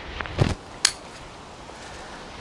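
Pruning shears snipping through a small bonsai branch: one sharp click a little under a second in, with a short low sound just before it.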